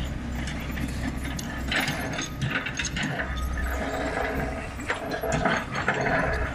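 Hyundai crawler excavator at work: a low engine drone that comes and goes, with irregular metallic clanks and rattles.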